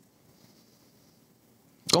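Near silence: faint room tone, with a man's voice starting again near the end.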